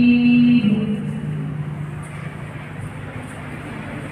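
A man reciting the Quran ends a long held note about half a second in. A pause for breath follows, filled only with the steady low noise of a crowded hall.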